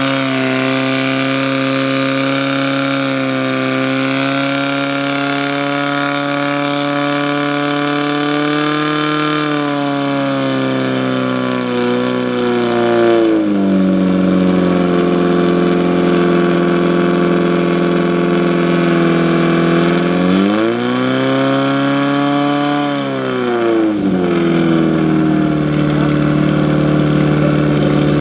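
Portable fire pump's engine running hard, driving water through the attack hoses to the nozzles. Its pitch rises about nine seconds in, drops a few seconds later, then rises again around twenty seconds and falls back about three seconds after.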